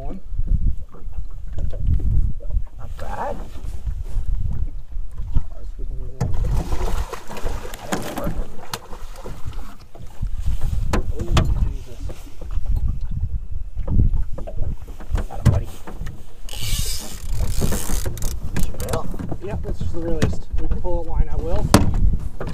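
Wind buffeting the microphone and chop on a small aluminium fishing boat, with repeated knocks and thumps of gear against the hull as a fish is brought alongside. There are brief voices throughout and a burst of rushing noise a few seconds after the middle.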